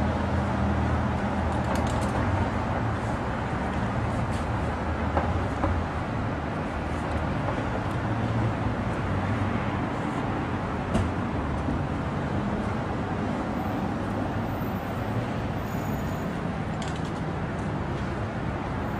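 Steady street traffic noise with vehicle engines running and a low hum, plus a few faint clicks.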